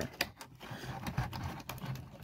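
Faint, light clicks and rustling from a die-cast toy car and its cardboard-and-plastic blister package being handled on a table.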